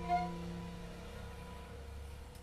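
The last held chord of a French horn, violin and piano trio, slowly fading away as the tune ends, with one short extra note just after the start.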